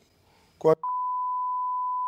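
Censor bleep: a steady, high-pitched single-tone beep that starts a little under a second in, after a short voice sound, and masks swearing.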